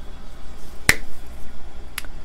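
A single sharp click about a second in, and a thinner, fainter click near the end, over a faint steady low hum.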